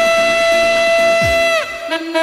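Tenor saxophone holding one long high note for about a second and a half over a dance backing track, then moving to a lower held note near the end; a kick drum thumps beneath about a second in.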